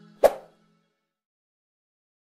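The last faint tail of outro music dying away, with a single short pop sound effect about a quarter second in.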